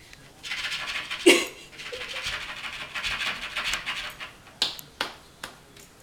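Labrador retriever puppy panting in a quick rippling rhythm, with one short voiced sound about a second in. Three sharp taps come near the end.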